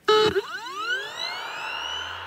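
Electronic sound-effect sting: a brief pitched tone, then a cluster of tones sweeping upward together and levelling off into a held shimmer. A low hum comes in near the end.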